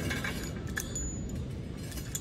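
Homemade steel sand bucket (well bailer) worked by hand: light metallic clinks and rattles as its rod moves in the rusty tube, with a short high ring about a second in.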